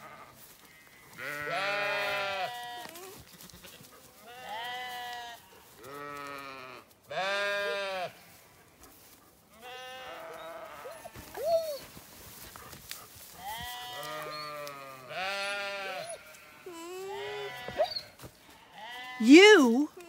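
A baby alpaca (cria), separated from its mother and the herd, calling over and over: a string of nasal, pitched cries about every two seconds, each a second or two long, with a louder call near the end.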